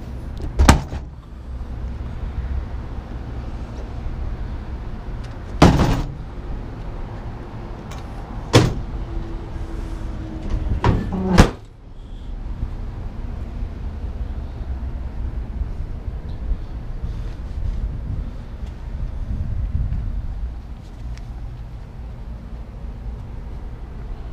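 A BakFlip hard folding tonneau cover on a pickup bed being folded back down and shut: four sharp knocks of the hard panels over about twelve seconds, the last one latching it closed. After that comes a steady low rumble.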